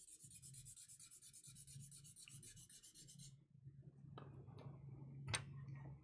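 White charcoal pencil rubbed rapidly back and forth on toned drawing paper, a faint, even scratching of many short strokes a second that stops about three and a half seconds in. A few light clicks and one sharper click follow near the end, over a low hum.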